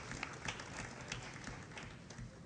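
Audience applause: many hand claps that thin out and fade toward the end.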